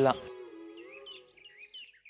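Birds chirping in quick, short, repeated calls, with a soft held music note underneath that fades out about halfway through. A man's voice finishes a line at the very start.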